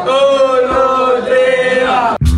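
A man's singing voice holding one long, steady note with no accompaniment, opening the show's theme song.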